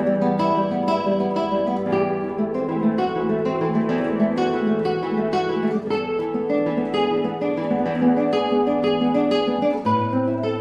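Solo Sanchez Mod.35 nylon-string classical guitar played fingerstyle: a steady flow of plucked melody notes over bass notes, several notes a second, with a chorus effect added to the recording.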